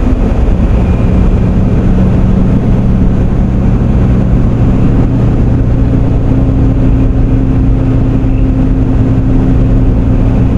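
Car engine and road noise heard from inside the cabin while driving at a steady speed: a steady low hum with a noisy rush.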